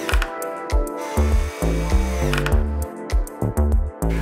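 Background music with a moving bass line, over a cordless drill-driver driving a screw through a steel drawer runner into a cabinet side.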